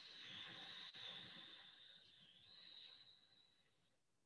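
A faint, long deep breath in, drawn in close to the microphone, that stops about three and a half seconds in.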